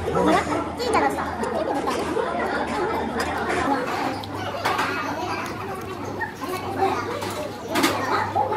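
Indistinct chatter of several people's voices in a busy restaurant, overlapping with no single clear speaker.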